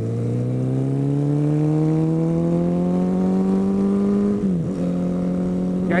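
Suzuki Bandit's inline-four motorcycle engine accelerating hard, its revs climbing steadily for about four and a half seconds. A quick upshift follows, after which it runs on at steady revs.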